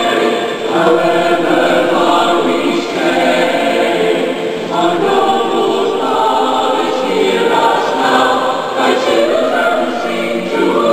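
A choir singing together, holding long notes in slow phrases.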